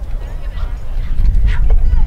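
Wind buffeting the microphone with a heavy low rumble. Over it come a few sharp knocks of blows landing as two armoured fighters spar with shields and weapons, against faint voices.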